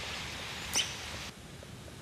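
Faint high bird chirps over outdoor background hiss, with one sharper chirp about three-quarters of a second in. A little after a second the background hiss drops away abruptly.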